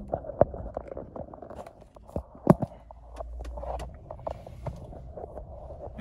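Handling noise of a phone camera being taken out of its tripod holder: rubbing and scraping against the microphone, with a few sharp clicks, the loudest about two and a half seconds in.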